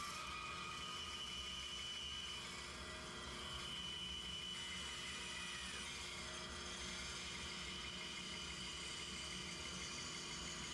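Bandsaw with a quarter-inch blade running and cutting through a thick wooden board, a steady whir.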